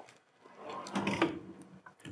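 Lower platen of a Hotronix Fusion IQ heat press being slid back on its drawer rails into place beneath the upper heat platen: a mechanical sliding sound lasting about a second, loudest about a second in.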